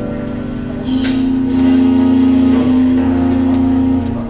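Live rock band through stage amplifiers: electric guitars and bass holding a sustained, ringing chord, growing louder about a second in.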